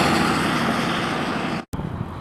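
A vehicle passing on a wet road, its tyre hiss fading away as it goes. Near the end the sound cuts off abruptly to a quieter steady hiss.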